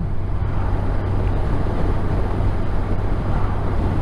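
Touring motorcycle cruising at speed: a steady low engine drone under constant wind and road rush.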